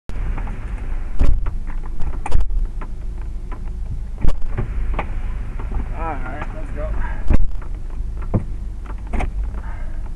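Heavy rain on a car's windshield and roof, heard from inside the cabin: a steady low rumble with loud, sharp drop impacts every second or two.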